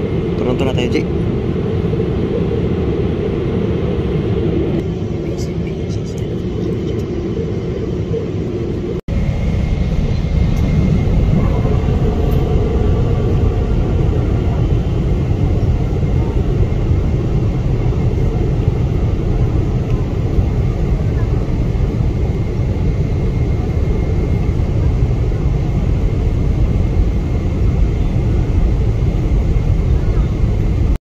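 Jet airliner cabin noise: the steady rumble of engines and airflow heard from a passenger seat. About nine seconds in it cuts abruptly to a louder, deeper rumble as the plane flies low on its approach.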